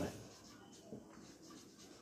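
Marker pen writing on a whiteboard: faint, short strokes of the felt tip on the board.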